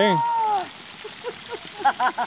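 Human voices: a drawn-out vocal call trails off early on, and a quick run of laughter comes near the end, over a steady hiss of running water.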